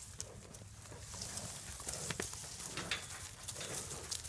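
Calves' hooves stepping and shuffling through dry grass and leaves, with a few sharp, irregular knocks.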